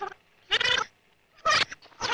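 Reel-to-reel tape recorder winding back with its recorded voice still audible, sped up into a few short, high squealing bursts that sound like a cat's cries.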